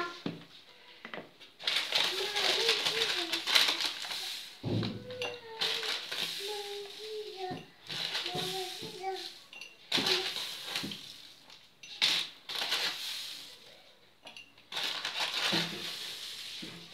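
A wire whisk beating semolina batter in a plastic bowl, heard as repeated bursts of swishing and scraping with short pauses between them. Faint voices run in the background.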